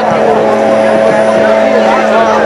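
Live band's amplified sound through the PA, a loud steady held chord over crowd noise with no beat yet, as a song begins.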